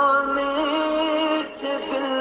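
A single voice singing an Urdu naat bidding farewell to Ramadan, in long held notes with a slight waver. There is a short break about one and a half seconds in before the next phrase begins.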